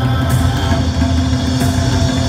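Tabla, a dayan and bayan pair, played in accompaniment over a steady drone, with a few sharp strokes.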